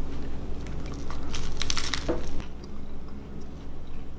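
A person biting into a sandwich of crisp baked carrot bacon, lettuce and tomato on bread, then chewing. A cluster of sharp crunches comes about one and a half seconds in, then quieter chewing.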